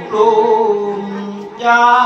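A monk singing a thet lae sermon, the melodic Isan style of preaching, into a microphone. A male voice holds long, slowly falling notes, breaks off about one and a half seconds in, and comes back on a louder, higher note.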